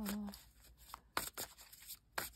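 A woman's long sung note ends just after the start, followed by a few faint taps and rustles of handling.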